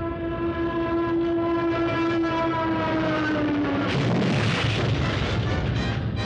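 Cartoon sound effect of a burning warplane diving: a single whine that holds and then slides slowly down in pitch for about four seconds. It breaks off into a rushing, noisy crash that lasts a second or so.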